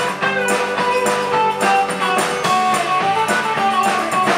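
Live band playing loud and steady: electric guitars over bass and drums.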